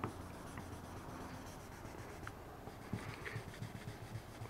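Faint rubbing of 1500-grit sandpaper on a small hand-held block over automotive clear coat, sanding a raised spot flat.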